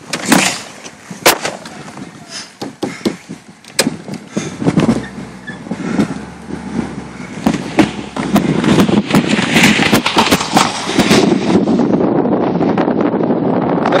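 Audi 80 Avant Quattro pulling away on a snowy road: engine and tyre noise with a few sharp knocks in the first four seconds, building into a steady, louder rush from about eight seconds in as the car gathers speed.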